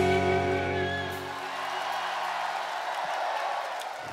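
A rock band's final held chord on electric guitars and bass ringing out, its low end stopping about a second and a half in. A crowd cheers under it and carries on alone after the chord ends.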